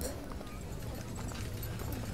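Faint background ambience track: a steady low hum with light scattered ticks, with no voice over it.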